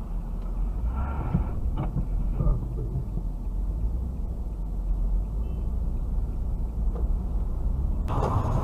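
Steady low rumble of a car's engine and tyres on the road, heard from inside the cabin through a dashcam microphone.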